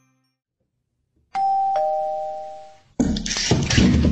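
Doorbell chime: a two-note ding-dong, a higher note then a lower one, ringing out for about a second and a half. About three seconds in, a loud burst of rough noise follows.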